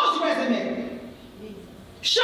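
Speech only: a woman preaching into a microphone, her voice dropping off and quieter through the second half.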